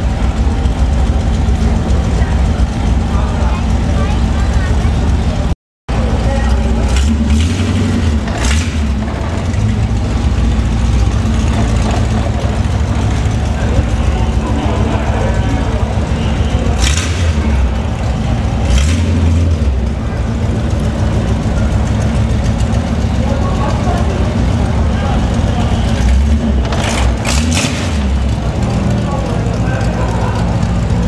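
Hot rod roadster's engine idling, with its throttle blipped several times for short revs.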